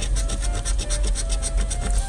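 A coin scraping the coating off a scratch-off lottery ticket in rapid back-and-forth strokes.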